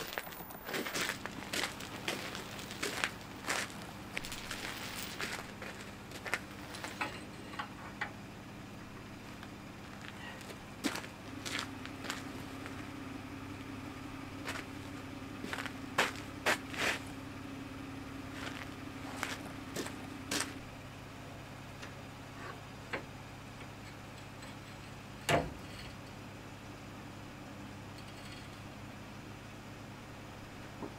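Scattered light clinks and knocks of steel hand tools and parts being handled, over a steady low hum, with one sharper knock about 25 seconds in.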